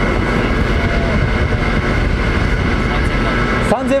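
Steady machinery drone on a ship's deck, with a thin high whine held steady over a heavy rumble, and wind buffeting the microphone.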